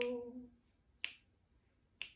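A woman's held sung note fades out in the first half second, then two finger snaps about a second apart keep the beat.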